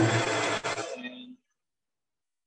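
Metal lathe cutting a 45-degree chamfer on the screw, heard for about a second with a steady hum before it fades and cuts out.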